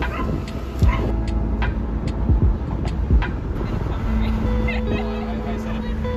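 Low rumble of a car, with a few knocks in the first half as someone climbs in. Music with steady held notes comes in from about four seconds, with voices under it.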